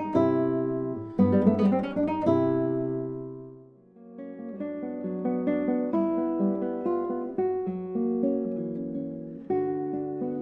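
Nylon-string classical guitar played fingerstyle: a quick run of plucked notes and chords rings out and dies away about four seconds in. Then a gentler passage of plucked notes begins.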